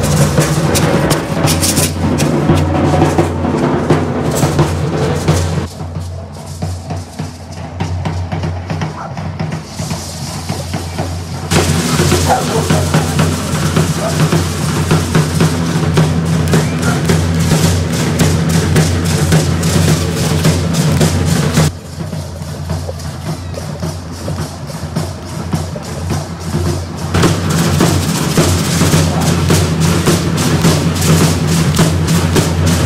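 Matachines drums, a large bass drum among them, beaten in a fast, continuous rhythm. The playing drops in level for a few seconds about six seconds in, and again past twenty seconds.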